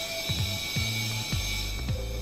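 CO2 gas hissing as it flows from the cylinder through the regulator into the stainless steel soda maker tank, at a tank pressure of about 25 kg/cm²; the hiss fades out near the end as the flow stops. A few light clicks about every half second.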